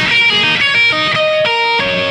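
Electric guitar playing an unaccompanied run of single notes in a rock song, with the bass and drums dropped out for the break.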